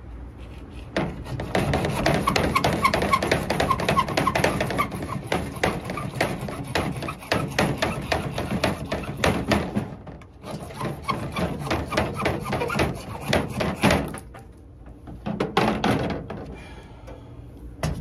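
Hacksaw cutting through PVC pipe at an angle, in rapid back-and-forth strokes. The sawing pauses briefly about ten seconds in, then ends with a few last strokes a few seconds before the end.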